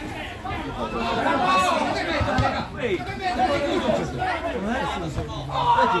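Several people's voices talking and calling out over one another at a football match, with louder shouting near the end.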